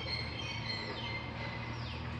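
Birds chirping, short high calls and a few quick falling notes, over a steady low background hum.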